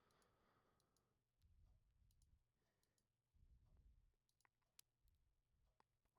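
Near silence, with a few faint, short computer mouse clicks, the loudest a little before five seconds in.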